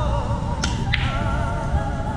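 Two sharp clicks of pool balls about a third of a second apart: the cue tip striking the cue ball, then the cue ball hitting an object ball.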